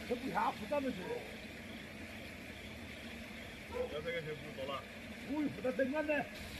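Faint, distant talking in short snatches over a steady low background hiss.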